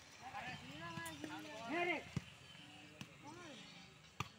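A volleyball being struck by hand during a rally: a few sharp smacks about a second apart, among players' shouts and calls.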